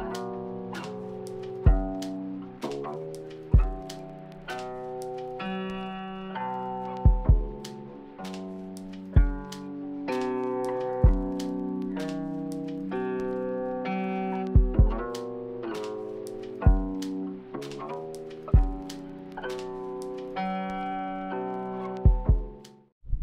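Instrumental background music: plucked notes over a low beat that falls about every two seconds.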